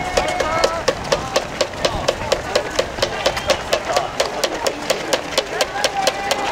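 Marathon runners' shoes slapping on the asphalt road as a dense pack passes close by, a quick patter of about five footfalls a second, over faint voices of spectators.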